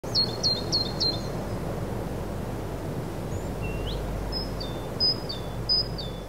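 Small birds chirping over a steady outdoor background hiss: a quick run of four chirps at the start, a rising whistled note about three and a half seconds in, then repeated two-note chirps near the end.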